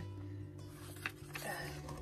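Soft background acoustic guitar music with steady held low notes, with faint paper rustles as a page of a paperback book is turned.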